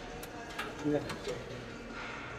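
Low gym background noise with a few faint light clicks, and a brief voice saying "yeah" about a second in.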